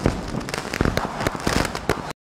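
Dense crackling with many irregular sharp pops. It cuts off suddenly just after the end.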